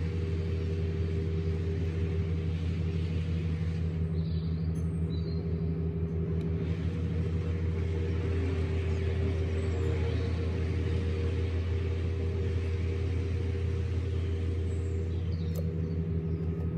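Yamaha XMAX scooter's single-cylinder engine idling steadily.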